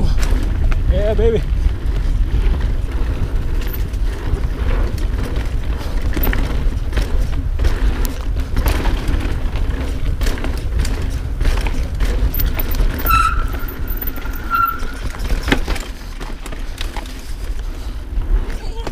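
Mountain bike descending dirt singletrack, heard from a camera on the bike: a steady rumble of wind and tyres on the microphone, broken by frequent clicks and rattles as the bike runs over roots and rocks. There are a couple of brief high squeaks late on.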